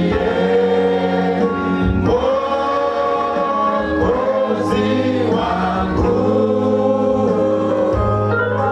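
Congregation of men and women singing a hymn together in several voices, with long held notes.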